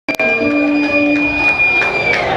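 Live rock band on stage sustaining a few held notes, with one high steady tone that slides down in pitch at the very end.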